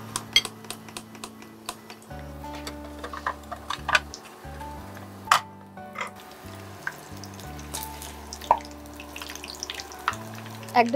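Battered fritters frying in hot oil in a non-stick pan, sizzling and crackling with scattered sharp clicks, the loudest about five seconds in, as pieces slide into the oil and a slotted spoon turns them. Soft background music with sustained low notes runs underneath.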